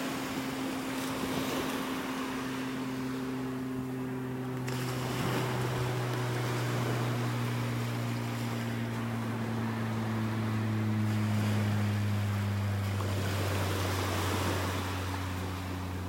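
A motorboat engine drones steadily, its pitch slowly falling, over small waves washing onto the sand.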